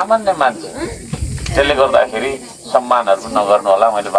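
A man's voice speaking through a handheld megaphone, with a short low rumble about a second in.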